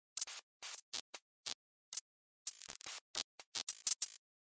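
A noise sound effect: short, irregular bursts of scratchy, hissy noise broken by dead silence. The bursts come faster in the last second and a half.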